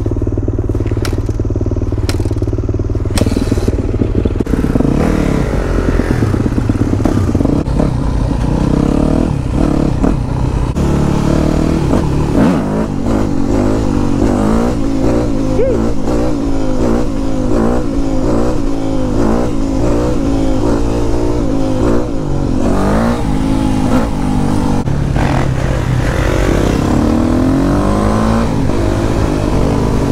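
Yamaha YZ250F four-stroke single-cylinder dirt-bike engine, heard close up from the rider's position. It runs steadily for the first few seconds, then pulls away and revs up and down again and again as it accelerates and changes gear.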